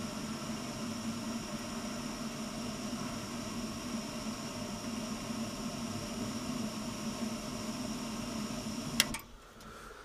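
Old Vaillant combi boiler firing, its burner running at full rate while the burner gas pressure is being set: a steady rushing noise with a low hum. It stops abruptly with a click about nine seconds in.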